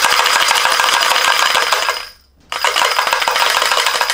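A pair of furi-tsuzumi, wooden Japanese dance hand drums each holding four small bells, shaken: the bells rattle and jingle against the wood in a very loud, dense rapid patter. It stops briefly about two seconds in, then starts again.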